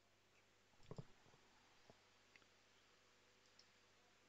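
Near silence with a few faint clicks of a computer mouse, the clearest about a second in.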